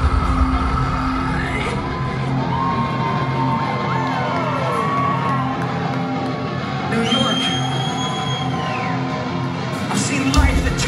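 A live rock band playing loud through a concert hall's PA, with the crowd cheering and whooping. The heavy bass and drums drop out about two seconds in, leaving held notes and sliding tones.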